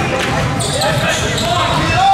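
Basketball game in a gym: players and spectators calling out over a steady din of voices, with a basketball bouncing on the court.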